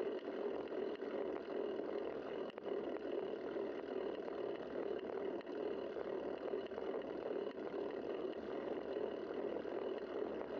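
Steady, unbroken rushing noise of riding a bicycle, wind and road noise on the bike-mounted camera's microphone, with a faint click about two and a half seconds in.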